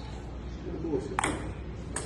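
Ping-pong ball clicking off paddle and table during a rally: one sharp click a little past a second in and another at the end.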